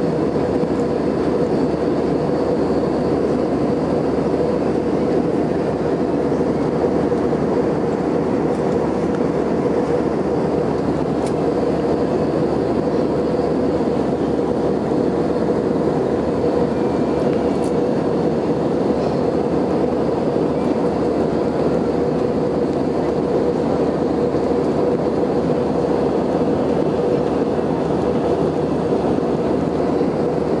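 Steady cabin roar of an Airbus A320 in flight, heard from a window seat over the wing: engine noise and airflow, with a steady hum running through it.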